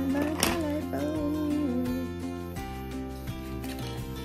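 Background music with sustained chords and a wavering melody line, broken by one sharp click about half a second in.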